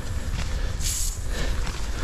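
Steady low rumble of wind on an action camera's microphone, with a short high hiss about a second in.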